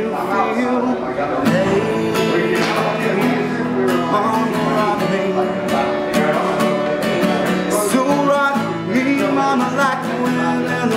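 Steel-string acoustic guitar strummed in a steady country rhythm: an instrumental break in a live country song.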